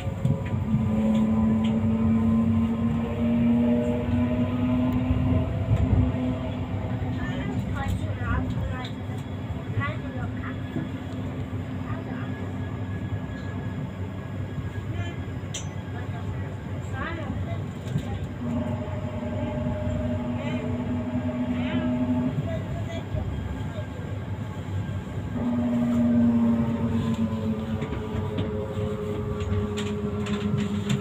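Tram running, heard from inside the passenger car: a pitched electric whine from the drive comes and goes in stretches over the steady rumble of the wheels on the rails.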